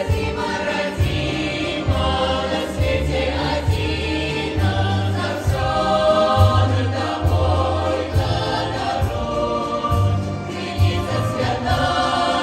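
Mixed choir of women's and men's voices singing a folk song in several parts, over a low bass line that moves in steps.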